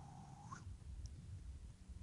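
Quiet room tone with a low steady hum, and a faint thin tone that rises in pitch about half a second in.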